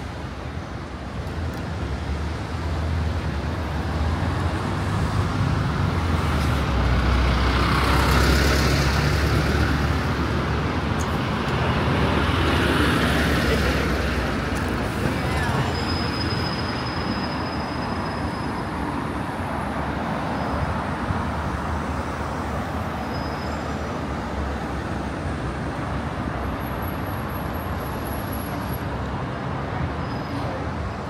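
Road traffic passing close by at a city street junction: engines running low and steady, with two vehicles going past loudest about 8 and 13 seconds in.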